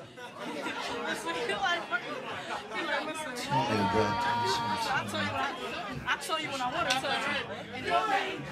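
Crowd chatter: many voices talking at once, with one held pitched note about halfway through.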